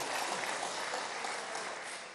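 Applause from members of parliament in the chamber, fading away gradually.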